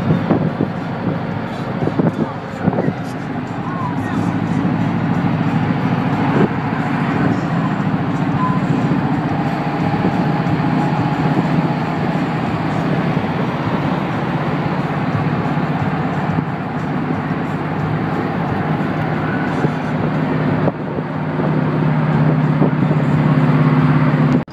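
Engine of a moving vehicle running steadily, with wind and road noise from inside the open-sided cab; the engine note grows louder over the last few seconds.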